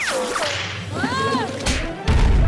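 Cartoon sound effects: a fast falling whip-like whoosh, then a short tone that rises and falls about a second in, then a quick swish near the end.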